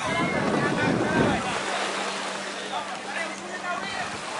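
Small motorboat crossing offshore, its engine a steady low hum, over gentle surf and wind on the microphone, with people's voices in the background.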